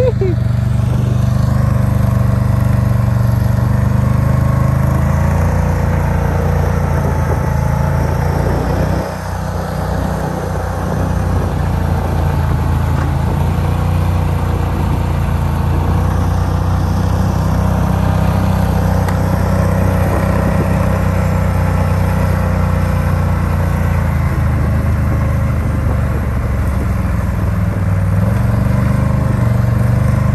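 ATV engine running steadily on a dirt trail, its level dipping briefly about nine seconds in and then recovering.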